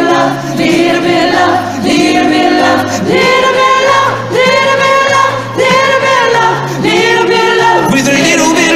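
Live concert singing of a slow pop ballad: long held sung notes with short breaths between them, over sustained low accompaniment notes, with several voices singing together.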